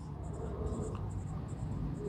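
Marker pen writing on a whiteboard: a string of short, faint, high-pitched strokes as a word is written.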